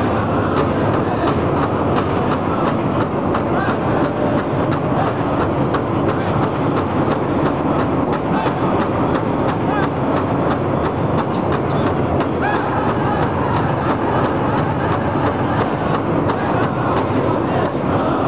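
Powwow drum group: several men striking one large shared drum together in a steady, even beat of about three strokes a second, with voices singing over it.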